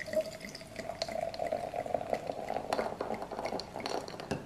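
A sparkling red drink being poured from a bottle into a tall glass over ice: a steady pouring stream that fades near the end, with small fizzing and ice clicks as the glass fills and foams.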